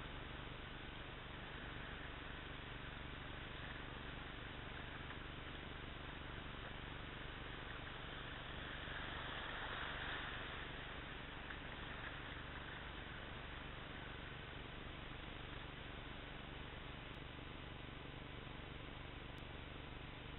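Rushing water of river rapids around a kayak, a steady hiss that swells to its loudest about halfway through as the kayak runs through the white water.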